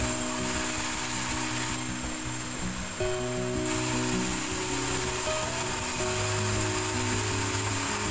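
Background music with a melody over a vertical band saw cutting a log lengthwise at a sawmill; the sawing is a steady noise underneath.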